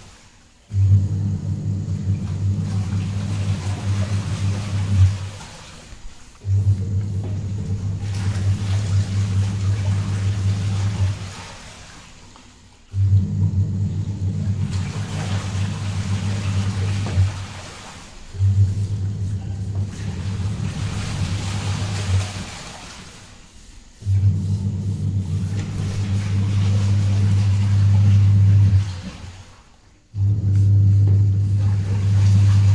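A steady low hum that starts abruptly and fades out again, about five times, each stretch lasting four to five seconds.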